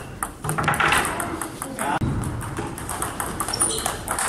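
Table tennis ball clicking off bats and the table in a rally, with more ball clicks from other tables being played in the same hall.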